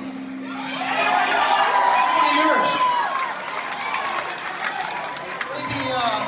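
Concert audience cheering and shouting, with one long high whoop that falls away about three seconds in.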